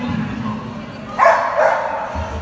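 A dog barking as it runs an agility course, with a handler's voice calling to it; the loudest sound comes a little past the middle.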